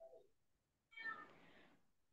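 Near silence, with one faint short sound about a second in.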